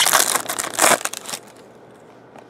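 Foil trading-card pack wrapper being torn open and crinkled by hand, a loud crackling that stops about a second and a half in.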